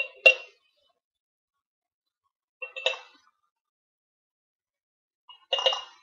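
A tablespoon clinking against glass pint canning jars as drained clams are spooned in. There are three short clusters of two or three ringing clinks each: one at the start, one about three seconds in and one near the end.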